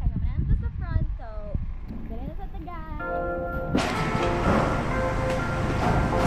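A woman's voice talking, then background music comes in about halfway through, becoming full and louder from about four seconds in.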